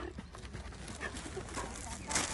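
A handler and a dog trotting on grass: quick, irregular footfalls over a low steady rumble, with faint voices.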